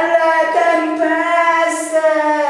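A young man singing unaccompanied, holding one long high note that sinks slightly in pitch near the end.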